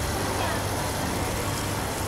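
Steady low background rumble with a faint even hiss, unchanging throughout.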